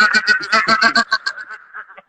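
A man's high-pitched, wavering yell broken into quick pulses, fading out toward the end.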